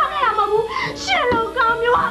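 A woman's voice wailing and crying in long swooping pitch glides over background music with sustained low notes.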